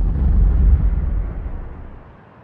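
A deep rumbling boom sound effect from a GoPro logo outro. It starts suddenly out of silence and fades steadily over about two seconds.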